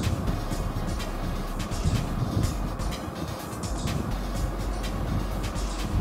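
Sizzling in a hot non-stick pan of sautéed vegetables as noodles are scraped and stirred in with a spatula, with short scraping noises throughout, over background music.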